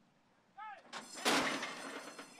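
A horse-race starting gate springing open: the metal front doors bang open about a second in, with the starting bell ringing over the clatter as the horses break.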